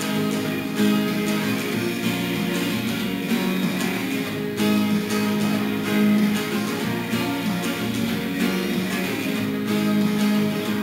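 Acoustic guitar with a capo on the first fret, strummed steadily through a simple A minor, F and G chord progression, played without singing. A few strokes land harder than the rest, about 1, 5 and 6 seconds in.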